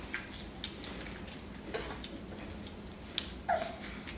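Quiet mouth sounds of someone chewing a bite of a snack, with a few small, faint clicks and a short hum of voice near the end.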